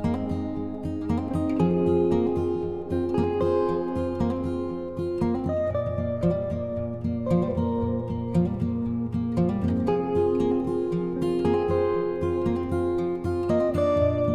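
Instrumental background music led by plucked, guitar-like strings, with many short picked notes over sustained chords.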